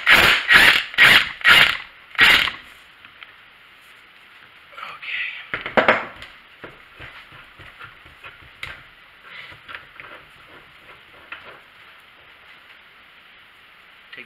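Cordless 20V impact wrench run in five short bursts about half a second apart, spinning a freed nut off a hydraulic cylinder's piston rod. A clunk of heavy metal parts being handled follows a little before six seconds in, then light clicks and clinks.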